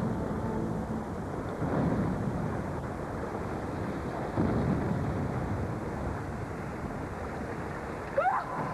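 A yacht exploding on the water: a low, rumbling blast noise that swells about a second and a half in and again about four and a half seconds in.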